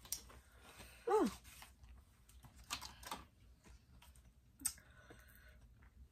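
Quiet chewing and small wet mouth clicks of someone eating a chili-coated peach ring gummy, with a few scattered clicks. There is one short vocal 'mm' that falls in pitch about a second in.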